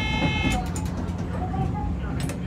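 Train running along the track, heard from inside the front cab: a steady low rumble with sharp clicks of the wheels over the rail. A brief high-pitched ringing tone sounds in the first half second.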